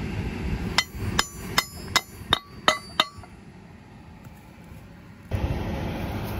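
Hammer tapping a part into the rusty steel leg mounting of a Quivogne cultivator: seven quick metal-on-metal strikes, about three a second, each ringing briefly.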